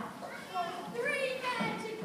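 Indistinct speech mixed with children's voices.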